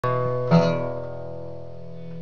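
Acoustic guitar: a chord strummed at the very start and a louder one about half a second in, left to ring and slowly fade.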